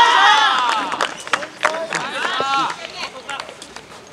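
A man's loud, drawn-out shout that fades over the first second, then a shorter call about two seconds in, with scattered light knocks between them.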